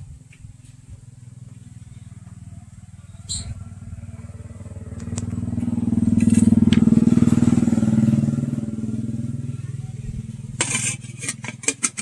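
A passing motorcycle engine, growing louder to a peak about halfway through and then fading away. Near the end come several sharp metallic clinks as the lid is set on a metal kettle.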